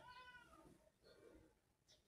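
Near silence, with a faint, short pitched call in the first half second.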